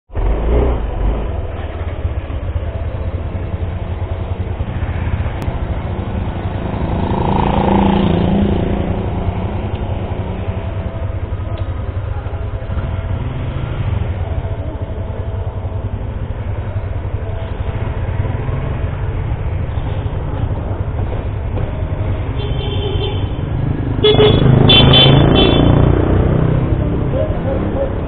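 Motorcycles idling in street traffic with a steady low rumble. Near the end a vehicle horn honks, the loudest part.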